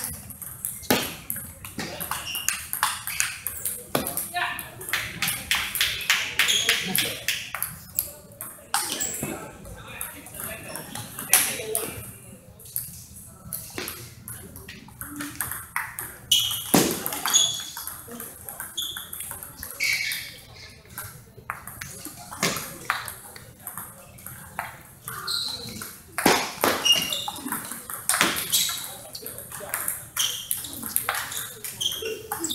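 Table tennis rallies: the ball clicking off rubber paddles and bouncing on the table in quick exchanges, with short pauses between points.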